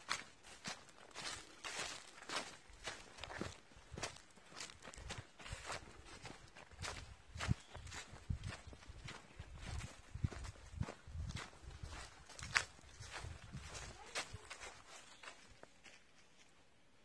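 Footsteps of two people walking on a dirt forest path covered in dry leaves, an irregular run of crunching steps about two a second, with a few louder ones.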